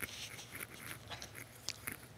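Faint rustling and crinkling of a fabric strap being handled on a strap-turning tool, with two light clicks near the end.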